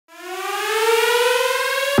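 Siren-like rising tone opening a bass house track. One buzzy pitched tone, rich in overtones, fades in quickly and glides slowly upward in pitch, like a riser building to the drop.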